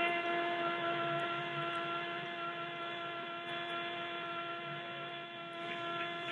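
A Spanish-language football commentator's drawn-out goal cry: one long 'Goooool!' held at a steady pitch.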